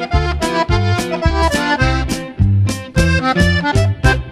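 Conjunto music: accordion playing the melody over a steady, bouncing bass line, in the closing bars of the song.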